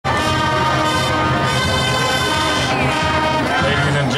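High school marching band playing, its brass section sounding loud, long-held chords.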